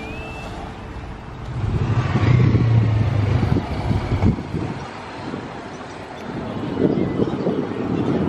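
Street traffic: a motor vehicle passes close by with a low engine hum, loudest between about two and four seconds in. Another vehicle approaches near the end.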